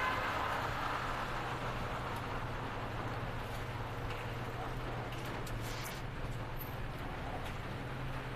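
Queued cars idling and creeping forward in a concrete parking garage: a steady low engine hum under an even traffic hiss.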